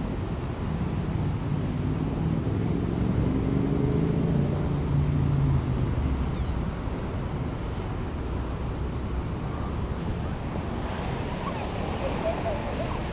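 Street traffic noise: a steady low rumble, with a vehicle engine passing that grows louder and peaks around five seconds in.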